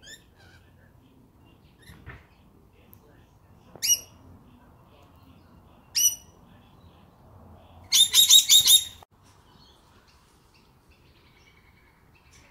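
Rainbow lorikeets calling: two single short, high calls about two seconds apart, then a rapid run of about six calls lasting about a second.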